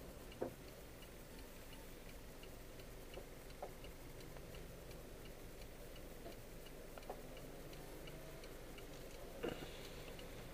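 Car turn-signal indicator ticking steadily inside the cabin over a low, steady road-and-engine rumble, with a few soft knocks, the loudest near the end.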